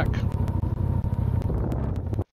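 Side-by-side UTV engine running as a low, steady rumble, with wind buffeting the Insta360 One R action camera's microphone and adding scattered crackles.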